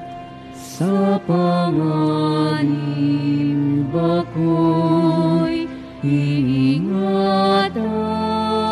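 Communion hymn sung in Tagalog, slow and legato, with long held notes that waver slightly and a short breath or consonant hiss between phrases.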